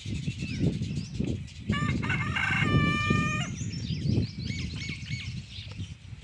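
A rooster crowing once, a long held call starting a little under two seconds in and lasting about a second and a half, followed by small birds chirping, over a low rumble of wind on the microphone.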